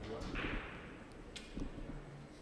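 Faint, brief scraping of billiard chalk rubbed on a cue tip, followed about a second later by a single sharp click.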